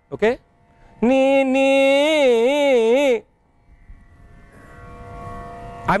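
A man's unaccompanied Carnatic singing voice: a brief rising slide, then a held phrase of about two seconds with wide, wavering gamaka oscillations that go just above the upper Sa and come back down. Nothing is sung wrongly, yet this stretching of the range makes the note sound like apaswaram, an out-of-tune note.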